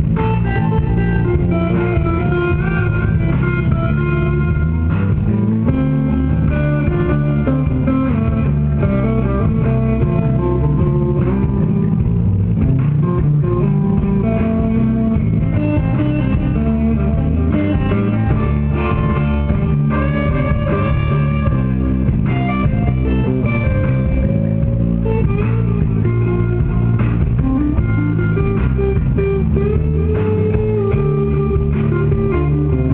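Live band music: an electric bass and an electric guitar playing together in an instrumental passage, with the bass strong and steady underneath.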